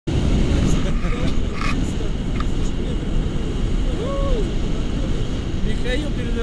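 Wind noise from the airflow of a paraglider in flight buffeting the camera microphone: a steady, heavy rumble, with a brief voice sound about four seconds in.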